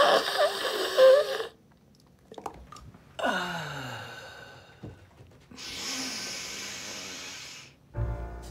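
A woman snorting hard through her nose with a strained, wavering voiced edge, then a sigh whose pitch falls away about three seconds in, then a long steady breath near the end. The sounds are a drug being snorted off a hand mirror.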